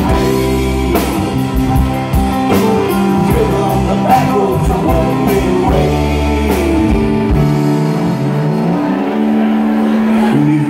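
Live rock band playing, with electric and acoustic guitars over a drum kit and bending melodic notes. About seven and a half seconds in the deep bass and drums fall away, leaving guitars holding and stepping up through sustained notes.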